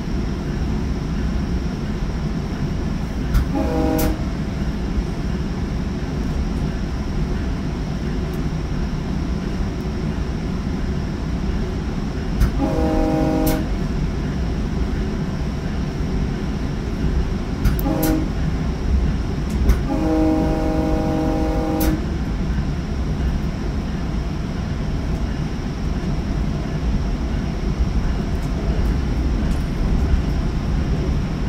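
Commuter train horn sounding four blasts, long, long, short, long, the grade-crossing warning pattern, with the last blast held longest. Under it runs the steady rumble of the train's wheels on the rails, heard from inside a coach moving at speed.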